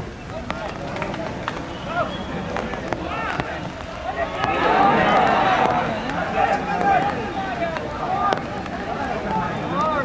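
Players and spectators shouting on a football pitch, with scattered calls at first that swell into many overlapping shouts about halfway through as an attack reaches the goalmouth, a reaction to a near miss.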